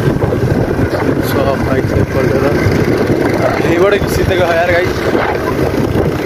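Wind buffeting the microphone on a moving motorbike, over a steady rumble of engine and road. A voice comes through faintly about four seconds in.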